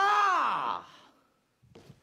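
A man's loud, drawn-out vocal exclamation like a sigh or groan, starting breathy, its pitch rising and then falling over about a second. A few faint footsteps on the stage floor follow near the end.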